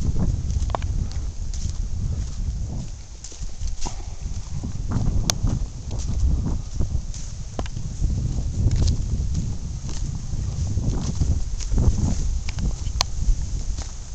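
Footsteps on a dry, leaf-littered dirt trail, falling in a steady walking rhythm, over a continuous low rumble on the microphone from the moving camera.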